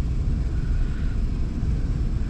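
Steady low rumble, with a faint thin tone for about half a second near the start.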